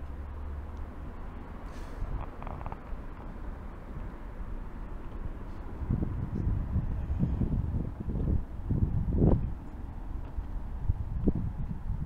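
A steady low rumble of street traffic, with a walker's footsteps thudding on the pavement from about halfway through.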